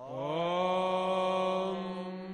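A voice holding one long chanted note in a Sanskrit mantra recitation, rising in pitch at the start and then held level, over a steady drone.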